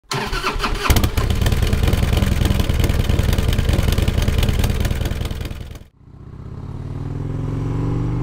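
A loud motorcycle engine starts and runs, with a sharp crack about a second in, then cuts off suddenly near six seconds. A Harley-Davidson Heritage Softail's V-twin then fades in under way, its pitch rising slowly as it pulls along.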